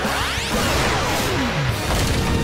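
Action-show soundtrack: background music mixed with sound effects, a quick rising whoosh about half a second long at the start, then a longer whoosh that falls in pitch to a low tone.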